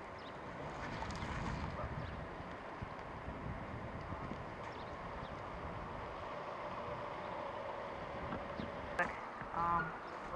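Steady outdoor background noise with a faint hum. Near the end come a sharp click and then a short pitched honk.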